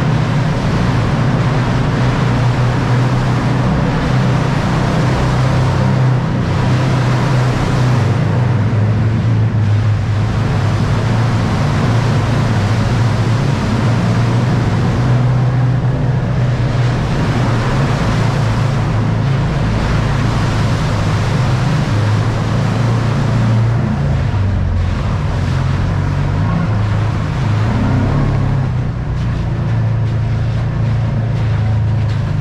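Kawasaki Teryx side-by-side's V-twin engine running steadily while driven, with tyres throwing water and mud on a wet rock tunnel floor.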